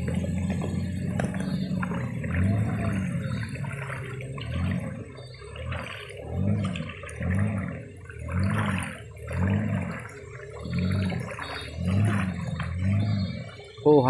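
Longboat's outboard engine running with a steady low hum, then from about five seconds in its note swells and falls about once a second, with water splashing around the pole in the river.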